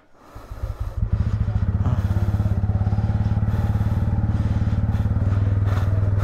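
A motorcycle engine starts about half a second in and settles into a steady, evenly pulsing idle.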